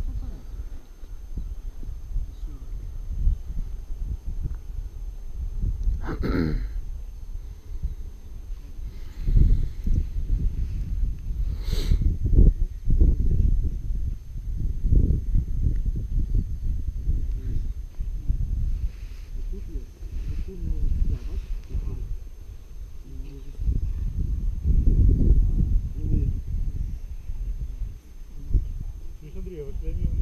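Wind buffeting the microphone in a gusting low rumble, with faint, indistinct voices in the distance and a couple of brief sharp sounds.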